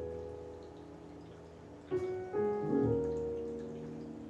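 Soft piano music: held notes fade away over the first two seconds, then new notes and chords come in about two seconds in.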